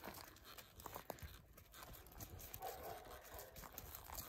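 Faint, irregular soft footfalls of a saddled horse walking on a dirt floor, with light rustling.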